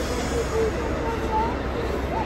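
A woman's high, wavering voice in short broken pieces, crying, over the steady low hum of a busy airport terminal hall.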